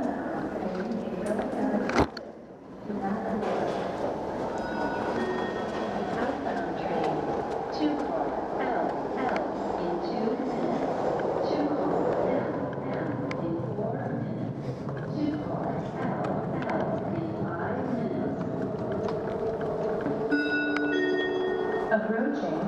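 Underground transit station ambience in a large echoing hall: a steady din of distant voices and machinery. A sharp click comes about two seconds in, and a short electronic chime sounds near the end.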